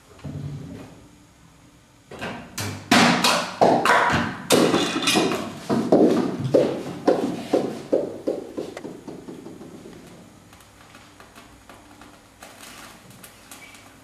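A homemade chain-reaction machine running: a run of sharp knocks and clatters as its parts strike and topple one another. These thin to single clicks about two a second that fade away, leaving faint ticking.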